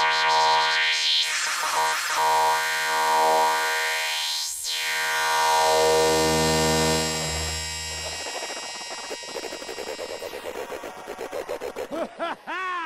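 Hardcore electronic dance music in a beatless synthesizer breakdown: sustained chords over a deep bass, with a rising and falling sweep about four and a half seconds in. About eight seconds in the bass drops out and the sound breaks into a fast stuttering pulse.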